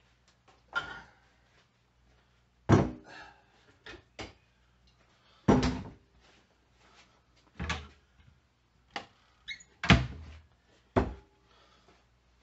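Kitchen doors and containers being handled: a string of about nine separate knocks and clunks, a few of them ringing briefly, as milk is fetched for the soup.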